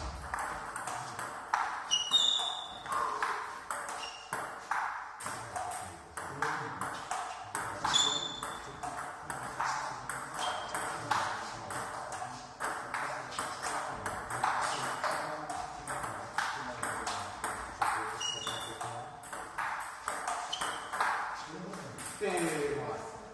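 Table tennis rallies: the ball clicking off bats and table tops several times a second, from play at two tables, some hits giving a short high ping.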